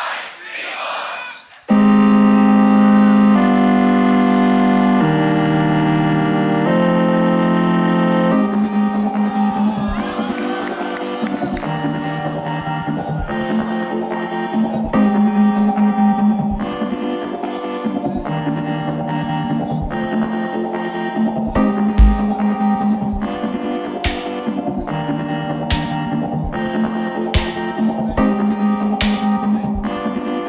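Live-looped beatbox music built on a BOSS RC-505mkII loop station. It opens about two seconds in with held chords that change every second or so. A beat comes in about eight seconds in, and sharp snare-like hits join it in the last few seconds.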